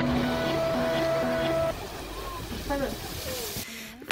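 Background music with sustained notes, which gives way a little under two seconds in to live outdoor sound: a steady rushing hiss with a few voices exclaiming. This is the Strokkur geyser erupting.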